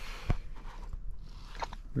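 Handling noise of a soft fabric laptop case being opened and its cords and contents moved about: faint rustling with a couple of light clicks.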